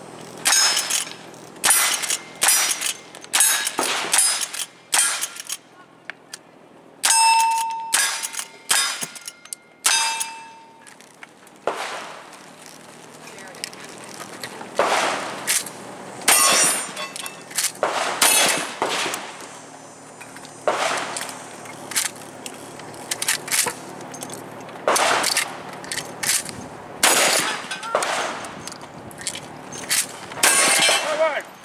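Cowboy action shooting string of fire: rifle shots in quick succession at first, steel targets ringing with a clear tone after hits, then slower, spaced shotgun shots.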